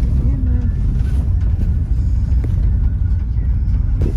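Steady low rumble of a moving vehicle heard from inside the cabin, with faint voices.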